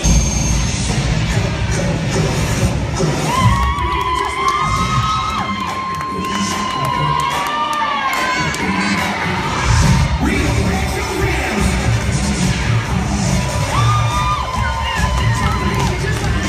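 A crowd of spectators cheering and shouting, with long, held high-pitched screams rising above the roar a few seconds in and again near the end.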